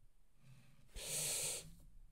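A man's short breath in, about a second in and lasting under a second; otherwise near silence.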